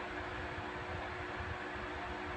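Steady background hiss with a faint, even low hum: room noise with no distinct event.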